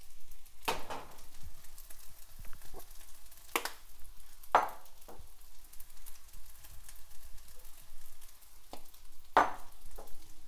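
Egg fried rice sizzling softly in a frying pan, with about four sharp clicks and knocks as spice shaker jars are picked up, shaken over the pan and set down.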